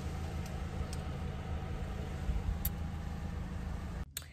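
Car engine running, a steady low rumble heard from inside the cabin, with a few faint clicks.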